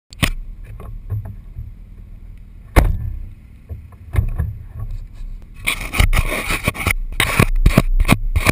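Hands knocking and rubbing on a GoPro camera housing mounted on a Jeep's door: sharp knocks near the start, just before 3 seconds and around 4 seconds, then a couple of seconds of loud scraping near the end. A low rumble runs underneath.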